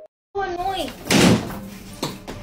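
A door slamming shut about a second in, one loud bang that rings briefly in the room.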